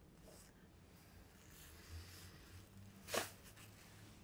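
Quiet handling of fly-tying materials at a vise, with faint rustling and one short, sharp sound about three seconds in.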